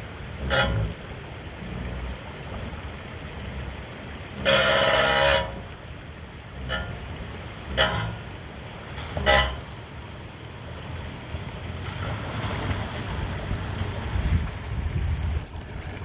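5th-gen Toyota 4Runner's 4.0 L V6 running at a low crawl as the truck picks its way down into and through a rocky creek, over a steady wash of running water, with a few short knocks. About four and a half seconds in, a loud steady tone lasting about a second stands out above the rest.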